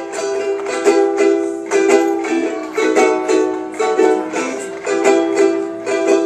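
Two ukuleles strummed together in a steady rhythm, playing chords without vocals in a small room.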